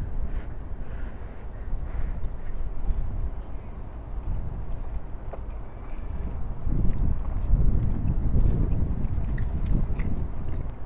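Wind buffeting the microphone, a low rumble that grows stronger in the second half.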